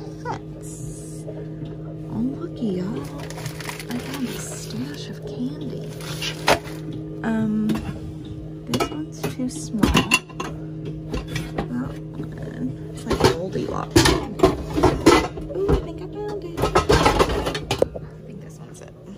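Metal pots, pans and glass lids clanking and scraping against each other as they are shifted around in a crowded kitchen cabinet; the knocks grow denser and louder through the second half.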